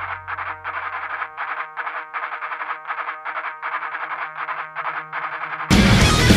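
Electric guitar played through effects, chopped into even pulses about four times a second, as the intro to a punk-rock song. Near the end the full band crashes in much louder, with distorted guitars and drums.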